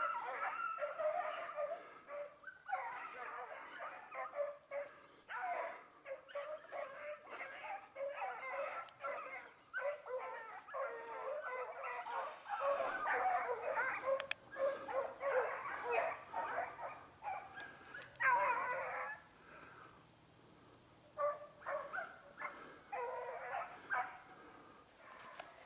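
A pack of hounds giving tongue on a rabbit's trail, many dogs baying and yelping over one another almost without a break. The cry dies down briefly a few seconds before the end, then picks up again in short spells.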